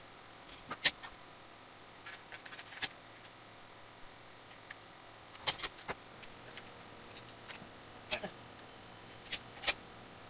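Scattered sharp clicks and knocks of two aluminium track-saw rails and their metal connector being handled and fitted together, about six louder clacks spread over the span, the loudest about a second in and near the end.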